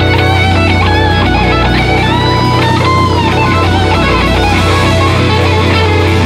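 Blues-rock band playing an instrumental passage without vocals, led by electric guitar, with notes bending in pitch about two seconds in.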